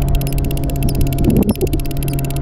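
Spinning fishing reel being cranked, giving a fast, even clicking, over a steady engine hum.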